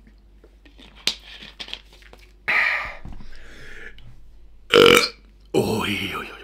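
A few quiet swallows from a plastic soft-drink bottle, then a string of loud burps from about two and a half seconds in, the loudest near five seconds.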